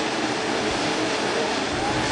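A pack of dirt-track modified race cars at full throttle together, their engines blending into one steady roar.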